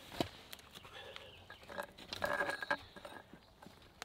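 Faint scattered clicks and scrapes of a metal bar being poked into a spring's outlet pipe to get water flowing, with a few slightly louder knocks in the middle.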